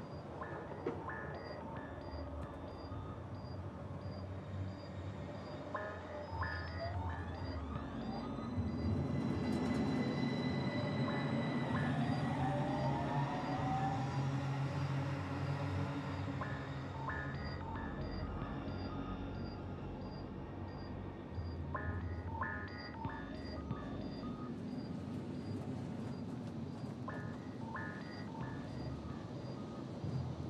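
Metro train running through a tunnel: a steady low rumble that grows louder in the middle, with a rising motor whine. Over it plays sparse music, with a regular high tick and a chiming figure that comes back every few seconds.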